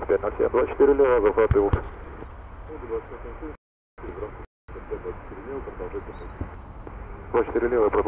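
Muffled, dull-sounding talk, clearest in the first two seconds and again near the end, with two short moments where the sound cuts out completely in the middle.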